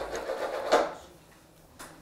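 A short scraping rustle with a sharper knock just under a second in, dying away to quiet, and a small click near the end.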